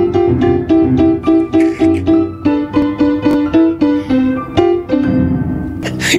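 Upright piano played clumsily by three non-players at once, with quick repeated notes about three or four a second that move to lower notes about halfway through and stop just before the end.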